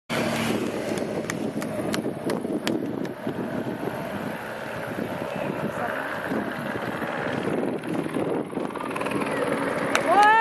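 Motorcycle engines passing close by, over the steady drone of a helicopter hovering overhead, with some wind on the microphone. A few sharp clicks sound in the first three seconds.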